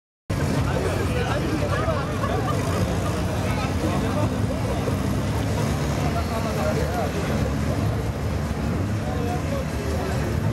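Two hatchback cars idling at a drag strip start line, a steady low engine note, with indistinct voices of nearby spectators talking over it.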